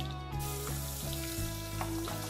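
Garlic paste sizzling as it hits hot pork fat in a frying pan, under background music.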